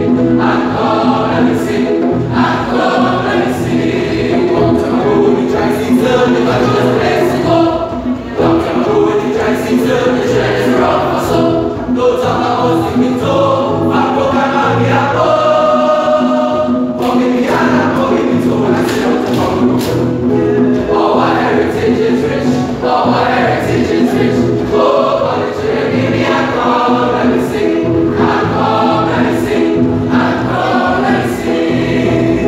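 Male school choir singing in parts, with one chord held steadily about halfway through.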